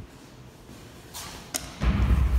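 A sharp click, then a heavy low thump near the end as a hand meets a metal door.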